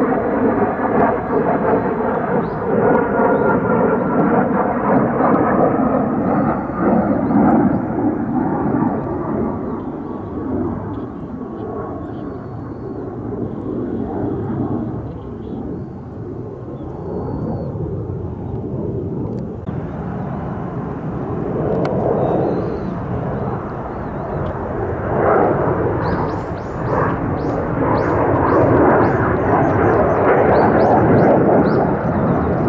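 Loud jet noise from an F-4EJ Phantom II's twin J79 turbojets as the jet flies past. The pitch falls in the first seconds as it moves away, the noise eases off through the middle, then builds again as it returns near the end.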